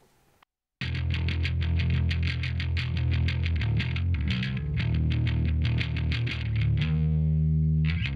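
Distorted electric bass, a guitar amp and a bass amp blended in Amplitube 5, playing back a fast, evenly picked driving line with a grinding tone. It starts just under a second in and ends on a held low note that rings for about a second before cutting off.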